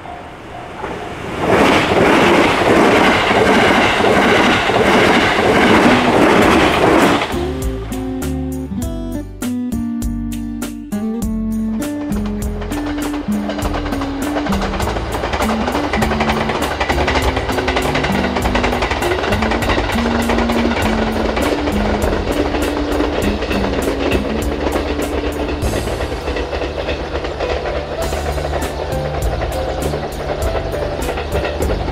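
A 787 series electric train rushing past for about six seconds, cut off abruptly, then background music with a steady beat and a bass line.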